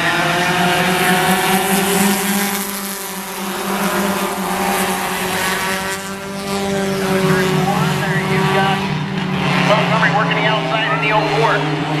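A pack of four-cylinder stock cars racing on a short oval, their engines droning together; the note swells and fades as the field goes by.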